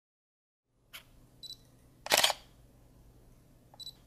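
Single-lens reflex camera sounds: a click, a short high focus beep, then the shutter firing about two seconds in, the loudest sound, and another short beep near the end.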